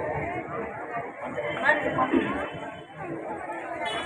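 Indistinct chatter of several people talking at once, fairly quiet, with no clear single voice, music or drumming.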